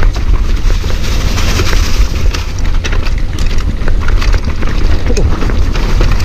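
Mountain bike riding fast down a rough dirt trail: wind buffets the action camera's microphone with a loud, steady rumble, over tyre noise on dirt and leaves and frequent clicks and rattles from the bike.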